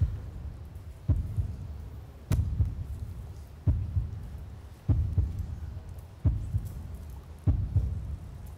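A slow, deep heartbeat-like pulse, one low thud about every 1.3 seconds, each fading before the next: a suspense sound effect played before the golden-card winners are announced.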